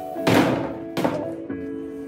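Background music over two thuds of a thin luan plywood sheet being set down on a stack of sheets on sawhorses: a loud one just after the start and a softer one about a second in.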